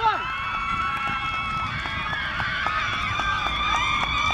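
Youth players and supporters cheering: a chanted "come on" at the start, then many high-pitched voices holding long, overlapping shouts.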